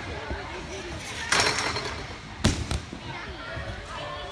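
Uneven bars workout: a short rushing burst of noise about a second and a half in, then a sharp impact about two and a half seconds in, with a lighter knock just after. Gym chatter runs underneath.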